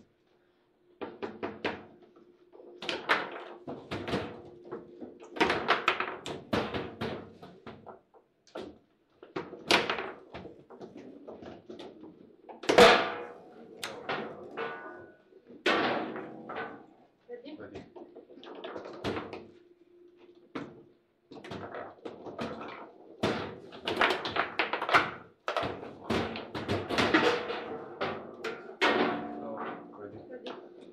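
Foosball table in play: a rapid clatter of hard knocks as the rods are jerked and slammed and the players' figures strike and trap the ball, coming in rallies with short pauses between them. The loudest is a single sharp crack about 13 seconds in.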